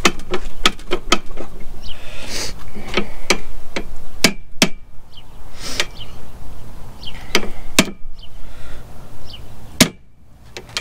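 Irregular metal-on-metal striking on a driveshaft yoke clamped in a bench vise, tapping at a U-joint to drive out its bearing cap. Several blows a second, with a few harder strikes about halfway through and near the end.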